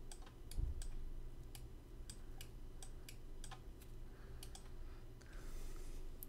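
A computer mouse clicking a dozen or more times at uneven intervals, quietly, with one soft low thump on the desk about half a second in.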